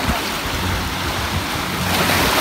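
Sea surf washing in and breaking around shoreline rocks, a steady rush of water.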